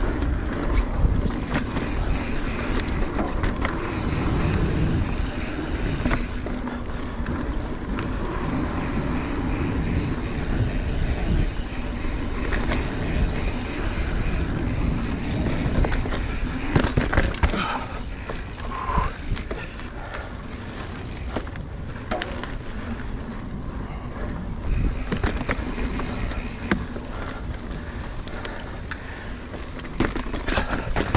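Mountain bike rolling fast over a dirt singletrack: steady tyre noise with many small knocks and rattles from the bike over bumps and roots, and wind rumbling on the microphone.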